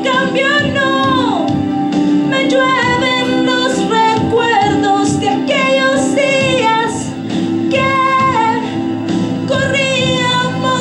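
A woman singing through a hand-held microphone and PA over instrumental accompaniment, holding long notes and sliding between pitches.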